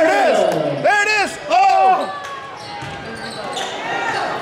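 Basketball game in a gym: long, raised shouts, two of them in the first two seconds, over a ball dribbling on the hardwood floor. The gym is quieter after that.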